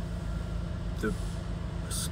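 Car cabin noise: a steady low rumble from the car's engine and road, heard from inside the car.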